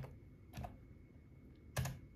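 Three separate keystrokes on a computer keyboard, the last near the end the loudest, as a new value is typed into a software setting field.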